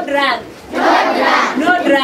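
A group of children chanting a poem loudly in unison, in phrases about a second long.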